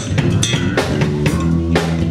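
Live band music: several electric bass guitars playing low, sustained notes over a drum kit keeping a steady beat of kick, snare and cymbal hits.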